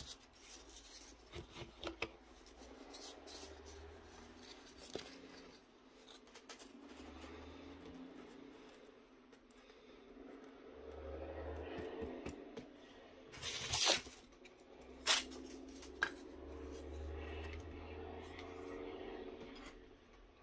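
Quiet handling of craft materials while gluing foam terrain with a hot glue gun: a few light clicks and taps, then a short rasping burst about two-thirds of the way through followed by a couple of sharp clicks. Underneath runs a faint, low, steady background sound from outdoors coming in through an open window.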